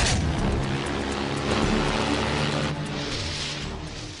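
Cartoon soundtrack with music over the steady drone of an airship's engines. It opens with a sudden loud burst, and a swell of rushing noise comes about three seconds in before the sound fades away.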